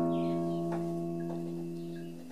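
Classical guitar chord left ringing after a strummed milonga phrase, slowly fading away, with a couple of faint string plucks about a second in.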